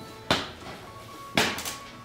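Two sharp knocks about a second apart from the loose windshield glass as it is lifted out of the frame and handled.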